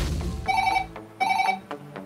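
White corded desk telephone ringing with an electronic ring: two short bursts, each about half a second long, with a brief gap between them.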